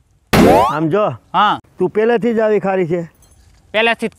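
A cartoon-style comedy sound effect comes in suddenly about a third of a second in and sweeps sharply up in pitch for about half a second; it is the loudest sound here. A person talks after it.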